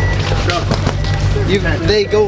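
Several men talking close by, not clearly worded, over background music with a steady low bass.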